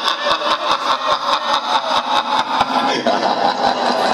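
Live rock band playing: electric guitar and a drum kit, with drum hits in a fast, even beat of about five a second under a dense sustained sound.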